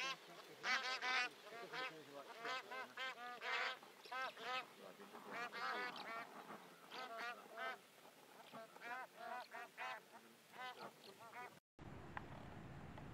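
A flock of bar-headed geese honking, many short nasal calls overlapping in quick succession, cutting off suddenly near the end.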